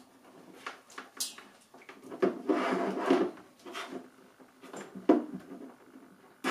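Low-voltage cables and small plastic plug connectors handled on a wooden tabletop as plugs are pushed together: rustling with scattered clicks, the sharpest click about five seconds in.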